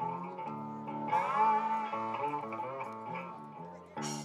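Guitar playing a slow line of sustained single notes as the intro of a live rock song. A louder, brighter note rings out about a second in.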